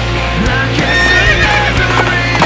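Rock music with a horse's whinny laid over it about a second in.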